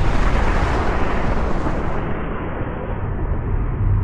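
Sound-design rumble and whoosh for an animated fiery-particle logo intro: a loud, low rumbling noise whose bright upper part cuts out suddenly about two seconds in, leaving a muffled rumble.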